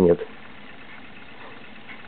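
Vega MP-120 cassette deck rewinding a tape toward the zeroed tape counter, a quiet steady whir of the transport.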